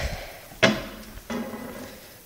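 Two knocks: a sharp one about half a second in and a softer one just over a second in, each trailing off with a short low hum.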